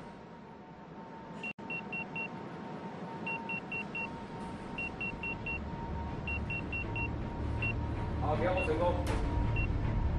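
Control-room electronic beeps sound in quick runs of four over a steady thin tone during the ignition sequence of a heavy-duty gas turbine, then slow to single beeps about once a second. A low rumble builds through the second half.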